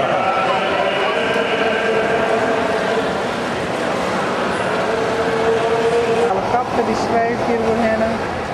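A gondolier singing in an opera style, with long held notes, over a steady hubbub of crowd voices.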